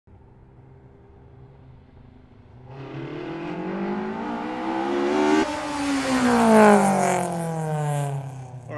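Race car engine, faint at first, then accelerating hard with its pitch climbing for a few seconds before falling away as the car passes by.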